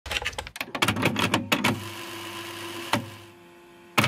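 A quick run of sharp clicks, several a second, for about a second and a half, then a held steady tone with one more click, fading out toward the end.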